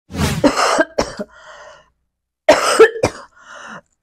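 A woman coughing in two harsh fits about two seconds apart, each trailing off into a fainter breath; she says she is very unwell and her voice won't come out.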